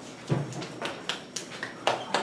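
Dry-erase marker drawing on a whiteboard: a series of short, scratchy strokes.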